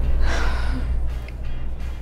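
A man lets out a breathy sigh, one exhalation lasting about half a second, over low background music.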